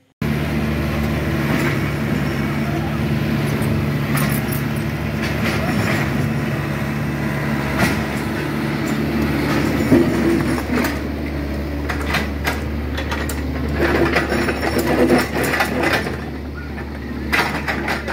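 SANY mini excavator's diesel engine running steadily while the machine digs up the road, with repeated metallic clanks and knocks from the bucket and tracks working on broken asphalt and stones. The engine note shifts about halfway through, and the knocking grows busier near the end.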